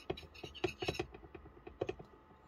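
A metal fork clicking and scraping against a ceramic plate: a handful of short knocks, the loudest in a quick cluster about halfway through and another just before the end.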